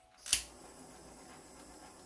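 Handheld butane torch: a sharp click from its igniter about a third of a second in, then the flame hissing steadily.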